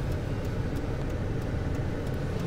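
Steady low rumble of a moving car heard from inside its cabin: engine and road noise at a constant, unchanging level.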